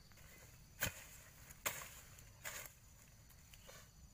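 A hand hoe chopping into soil and dry grass: three sharp strikes a little under a second apart, then a fainter one near the end.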